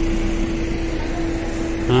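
A steady mechanical hum: one constant mid-pitched drone over a low rumble.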